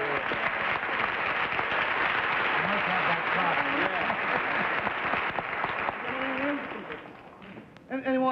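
Studio audience applauding steadily, with faint voices under it; the applause dies away about seven seconds in.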